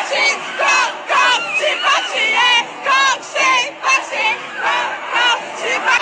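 Concert crowd screaming and shouting, many high voices overlapping in loud surges that rise and fall.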